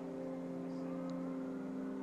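A steady low hum made of several held tones, with nothing else over it.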